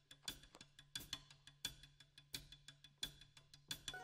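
Drum kit played softly on its own: a pattern of sharp, clicking stick strokes, about three a second, over a low steady hum.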